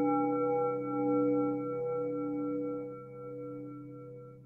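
A bell-like tone, struck just before, ringing with several steady overtones that slowly die away, the upper ones pulsing gently, over a low steady hum.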